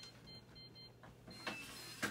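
Quiet room tone, with a brief faint rustle about one and a half seconds in.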